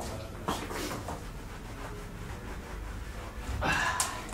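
Quiet handling sounds on a hard floor: a light footstep-like knock about half a second in, then faint shuffling, and a short burst of rubbing near the end as a cloth wipes the floor.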